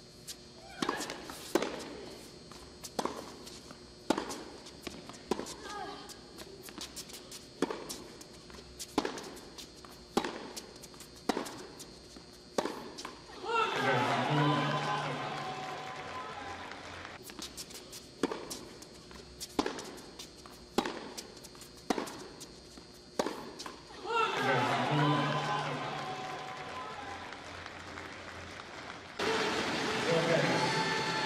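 Tennis ball struck back and forth by rackets in a rally, a sharp hit about every second, then the crowd cheering and clapping as the point ends. A second rally follows and again ends in crowd cheers.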